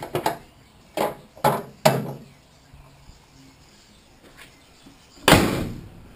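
A few sharp knocks and clatters in the first two seconds, then a steel car bonnet slammed shut about five seconds in: a single heavy slam that rings briefly.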